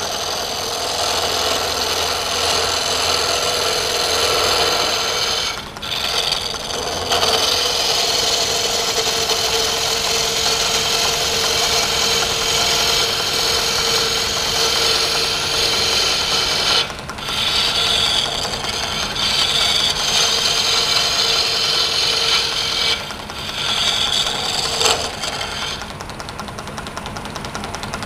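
Wood lathe spinning a wooden blank while a hand-held turning chisel cuts into it: a continuous rasping, scraping cut as the wood is turned to a round shape. The cut breaks off briefly three times where the tool leaves the wood, and is lighter near the end.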